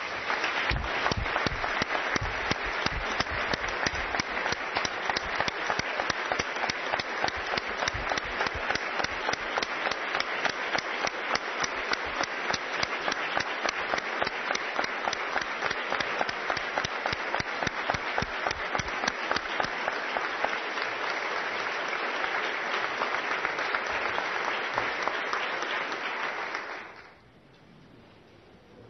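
Sustained applause from a large assembly, dense and even, dying away quickly about a second before the end.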